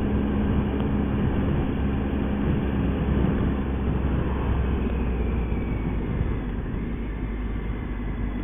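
Motorcycle ridden at road speed: a steady engine hum under rushing wind and road noise, getting slightly quieter near the end.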